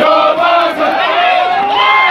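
A group of marching soldiers chanting and shouting together, many male voices at once, with one long rising call in the second half.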